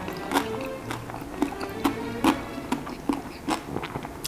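A person chewing a mouthful of crunchy-edged baked rigatoni, with a string of sharp crunches roughly every half second. Soft background music plays underneath.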